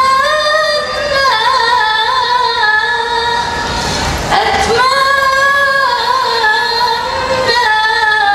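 A woman singing a long, ornamented qasidah melody into a microphone, holding notes and bending them with melismatic turns. A brief rush of noise cuts across the voice about halfway through.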